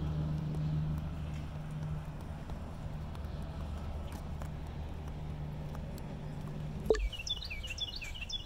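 A vehicle's engine running with a steady low hum while moving slowly, cutting off with a click about seven seconds in. It is followed by birds chirping.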